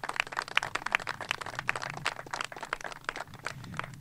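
A small group of people clapping, many quick, uneven claps.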